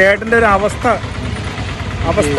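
Street traffic: a steady low motor-vehicle engine rumble, under a man talking for about the first second.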